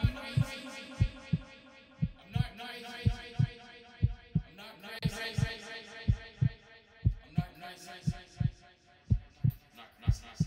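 Heartbeat sound effect on a horror soundtrack: a low double thump about once a second, over sustained droning tones that shift every couple of seconds.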